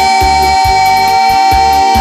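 Live arrocha band music, instrumental: one long held lead note over a steady bass and drum beat.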